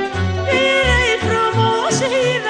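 A woman singing a Romanian folk song (muzică populară) in a strong, ornamented voice, with quick turns and glides in the melody. Instrumental accompaniment runs under her with a steady pulsing bass beat.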